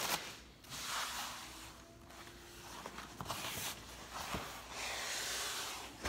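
A rolled-up plastic color-changing shower curtain being unrolled and spread out by hand, the sheet rustling in several bursts, with a single sharp click a little after four seconds.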